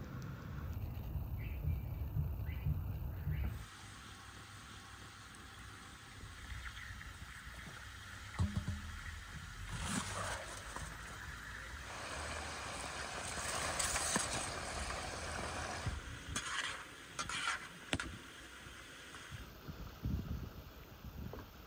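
A wood fire burning with a low rumble and a few crackles. After a cut, short knocks, rustles and noisy bursts of a large cauldron, its foil and lid being handled, with a longer hiss in the middle.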